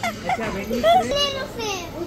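Children's voices: several short, high-pitched calls and chatter.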